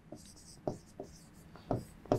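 Marker pen writing on a whiteboard: faint scratchy strokes, with a few short soft taps as the characters are drawn.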